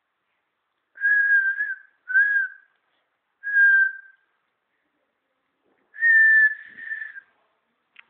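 A person whistling four short notes, each near one steady pitch. Three brief notes come in the first four seconds, and a longer, slightly higher one comes about six seconds in.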